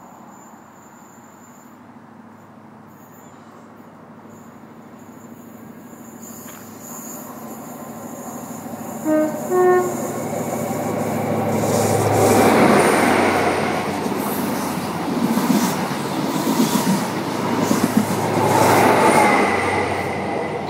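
Network Rail HST diesel train approaching and sounding its two-tone horn, two short notes, low then high, about nine seconds in. It then runs through at speed: engine and wheel-on-rail noise swells and stays loud for several seconds, peaking twice as the two power cars pass.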